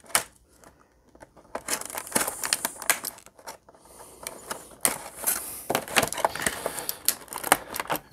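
Clear plastic blister packaging crinkling and crackling as hands work a toy figure loose from its tray, in a run of irregular crackles starting about a second and a half in, after a single sharp click at the very start.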